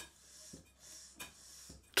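Stuart 5A model steam engine running slowly on compressed air, a faint hiss broken by a few light clunks, the clunk coming at one end of the crankshaft's rotation. The owner puts it down to a slide valve that is not quite right, admitting air too early at one end of the stroke.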